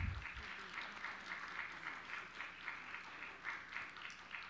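Light applause from a small group in the room, a patter of scattered hand claps that thins out near the end. It follows a short low thump at the very start.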